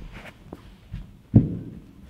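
Soft handling noises of a person settling her calf onto a foam roller on a padded gym mat: a few light knocks, then one louder thud about one and a half seconds in.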